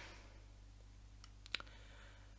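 Quiet room tone with a steady low hum, broken by a few faint, short clicks past the middle.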